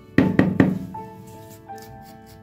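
Three quick knocks from a small plastic paint bottle being handled on a tabletop, about a fifth of a second apart, over background music with sustained notes.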